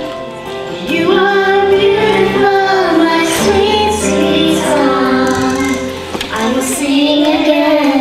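A young girl singing a solo into a microphone, her voice rising and falling in sung phrases over steady held accompaniment.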